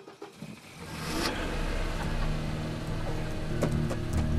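Volvo station wagon's engine catching and revving about a second in, then running steadily: the old car still works.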